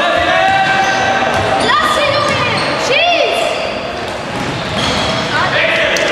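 Sports shoes squeaking on a sports-hall floor as players run and turn, in long high-pitched squeals that slide up and down, ringing in the large hall. A few sharp knocks of the ball come near the end.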